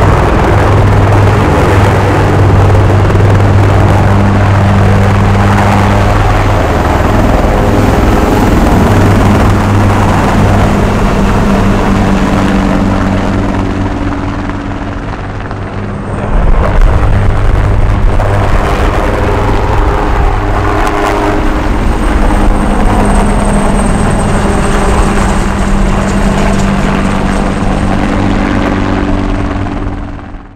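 Bell AH-1Z Viper attack helicopters running loud and steady as they lift off and fly past, rotor and turbine together. The level sags briefly about halfway through and then comes back up, with a thin high turbine whine in the second half.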